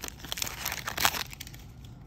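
Plastic foil wrapper of a Magic: The Gathering booster pack crinkling as it is pulled open and the cards are slid out, with the loudest crinkle about a second in, then quieter handling.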